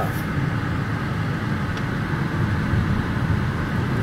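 Steady low rumble of a moving car, engine and tyre noise, heard from inside the cabin while driving.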